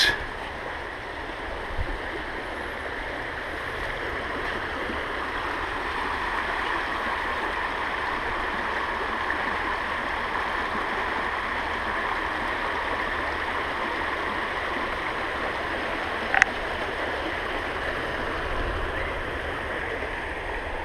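Shallow river water rushing over rocks in riffles, a steady rush with no break, with one short click about sixteen seconds in.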